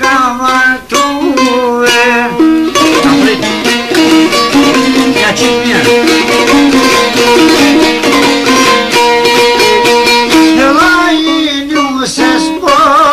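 Albanian folk song: a man singing with a wavering, ornamented voice over a çifteli for the first couple of seconds, then an instrumental passage of quick plucked-string notes over a steady drone, with the voice coming back in near the end.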